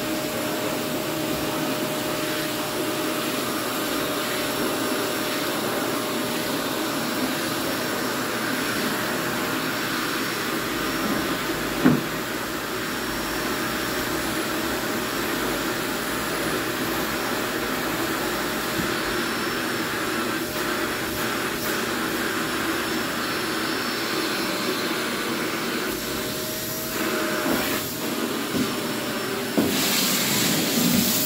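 Canister vacuum cleaner running steadily as it is drawn over carpet, its motor giving an even rushing noise with a steady hum. There is one brief knock partway through, and the sound becomes less even near the end as the bare hose is worked along the baseboard.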